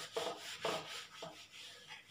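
Handheld eraser wiped back and forth across a whiteboard in short strokes, about two a second, each stroke carrying a faint squeak.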